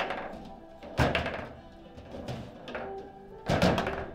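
Foosball table in play: hard knocks of the ball and rod-mounted figures against the table, once at the start, again about a second in, and a cluster near the end, over background music.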